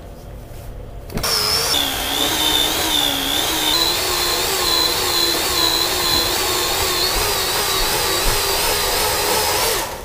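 Electric stand mixer with twin beaters running in a stainless steel bowl, mixing cake batter. It starts about a second in, its motor whine drops in pitch soon after starting and then holds steady with a slight waver, and it switches off just before the end.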